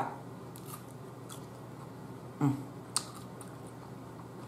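A person chewing a crunchy strip of bell pepper in sauce, with faint crunches, a short hum from the voice about two and a half seconds in, and a sharp click about three seconds in.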